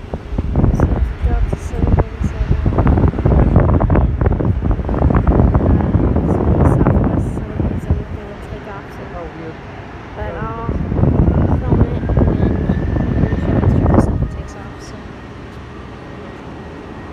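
Wind buffeting the microphone in uneven gusts, loud for most of the first half, dropping away briefly, then rising again before it falls off near the end. A short burst of faint voices comes in the lull.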